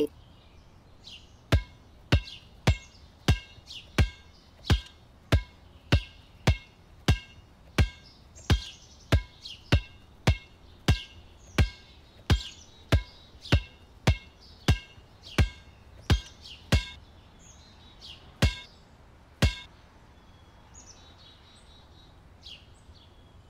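A basketball is dribbled steadily on a hard court, about one and a half bounces a second, each bounce a sharp thud with a short ringing ping. The dribbling stops briefly near the end, comes back for two slower bounces, then stops. Faint bird chirps sound in the background.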